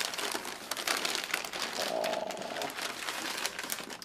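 Crinkling and rustling of a takeout sandwich's white wrapping as it is handled and opened by hand, a dense run of small crackles.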